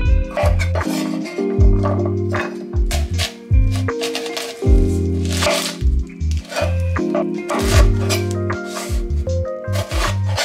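Background music with sustained low bass notes and a beat, over a chef's knife chopping on a bamboo cutting board: sharp cracks of the blade through carrot and then through a crisp onion onto the wood, repeated every second or so.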